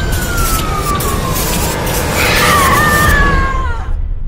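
Film trailer sound design: a heavy low rumble under a long tone that slides slowly down in pitch, joined about two seconds in by a second, wavering tone that also drops away near the end, with a few sharp hits early on the noise bed.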